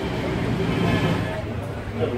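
Street background: a steady traffic rumble with indistinct voices.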